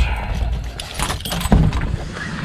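A bunch of keys jangling and a door latch clicking as a door is unlocked and pushed open, with a dull thump about one and a half seconds in.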